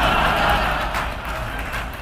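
A live audience laughing and clapping in response to a joke. The crowd noise swells at first and fades away over the two seconds.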